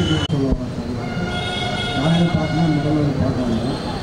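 A man's voice through a handheld microphone and PA system, with a steady high tone lasting about a second in the middle.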